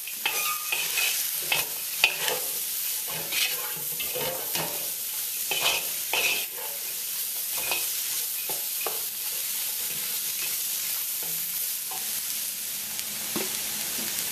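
Vegetables sizzling steadily in a hot wok while a wooden spatula stirs and tosses them. Irregular scrapes and clacks of the spatula against the wok come through the sizzle, more often in the first half.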